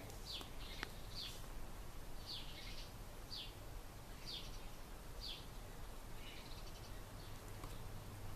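A bird chirping faintly in the background: short high chirps, about one a second, over a faint low hum.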